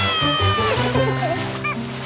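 Cartoon background music with a high, squeaky cry from a cartoon chick that slides down in pitch over the first second, and a short squeak near the end.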